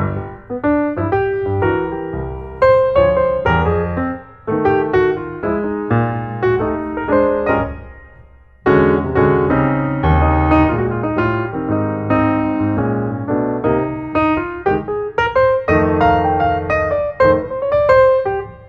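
Piano music, a steady run of notes, fading briefly about eight seconds in before picking up again.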